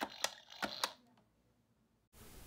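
About four sharp plastic clicks and taps in the first second as a hand handles a plastic toy playset and its figures.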